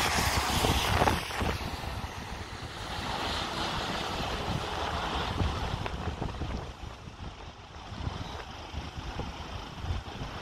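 Wind buffeting the microphone over a steady rushing background, loudest in the first second or so.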